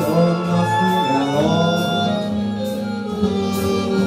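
A swing-era big band recording playing: an instrumental passage of held, layered notes, some of them bending in pitch.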